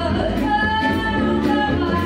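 Live gypsy-jazz band: a woman sings long held notes over strummed rhythm acoustic guitars and double bass.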